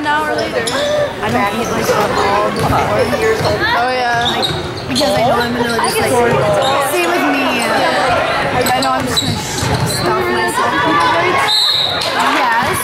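Basketball being dribbled on a gym's wooden court during play, under a steady run of voices from people in the gym talking and calling out, with a couple of short high squeaks.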